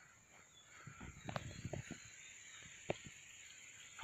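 Faint outdoor quiet with soft rustling and a few light clicks, clustered between about one and two seconds in, with one more click near three seconds.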